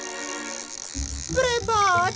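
Cartoon soundtrack: a held musical tone, then about a second in a low buzz starts, with a character's voice over it near the end.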